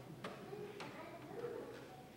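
A few soft handling clicks close to a lapel microphone, with a faint voice murmuring about halfway through.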